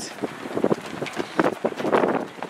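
Wind buffeting a handheld camera's microphone outdoors, coming in irregular gusts.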